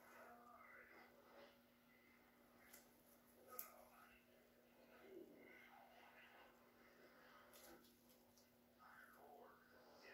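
Near silence: faint room tone with a low steady hum and one brief soft click about three and a half seconds in.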